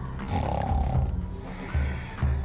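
Background music with a low, pulsing beat, about two pulses a second.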